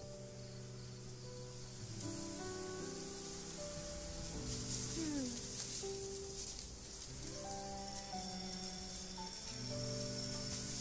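Film score of slow, sustained notes moving gently from pitch to pitch, over a steady high shimmering hiss that grows stronger about two seconds in.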